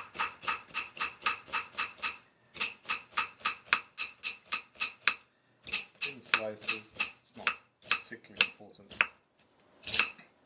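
Kitchen knife slicing an onion on a wooden chopping block: quick, even knife strikes through the onion onto the wood, about four a second, in runs with short pauses, slower and more uneven in the second half.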